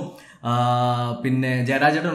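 A man's voice: after a brief pause he holds one drawn-out vowel at a steady pitch for under a second, which sounds chant-like, then goes on talking.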